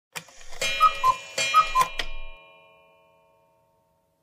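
A short chiming sound effect: a bright bell-like ring with four quick alternating high-low notes. It stops about two seconds in and leaves a ringing tone that fades away.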